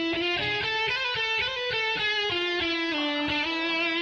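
Electric guitar playing a melodic line of held notes that change pitch every fraction of a second. It starts suddenly, right at the beginning.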